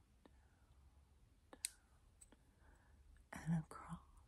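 A few faint, sparse clicks, one sharper about one and a half seconds in, then a brief breathy whisper from a woman's voice near the end.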